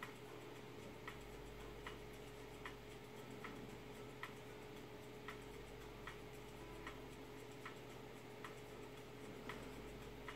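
Faint, regular ticking, a little slower than one tick a second, over a steady low hum.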